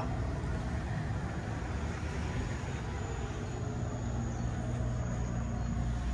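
Steady outdoor background noise with a low hum underneath, and a faint thin high whine from about halfway through; no distinct single event stands out.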